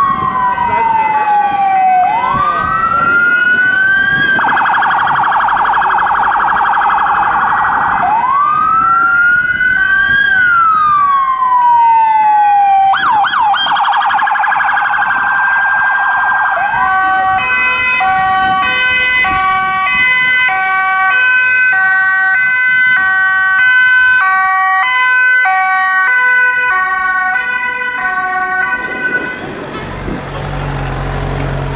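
Electronic American-style emergency siren on a passing vehicle, switching between a slow wail that rises and falls and a rapid yelp. From about 17 seconds in, two-tone sirens of the Dutch kind take over, stepping back and forth between high and low notes.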